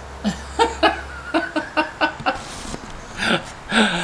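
A person laughing in a quick run of short, high-pitched bursts, with two more bursts near the end.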